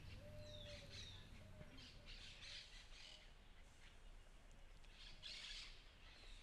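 Faint bird calls: a few short falling chirps early on, then two brief harsher calls, one in the middle and one near the end.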